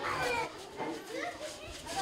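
Children's voices chattering and calling over one another in a crowded classroom, louder for the first half-second and then a quieter murmur of overlapping voices.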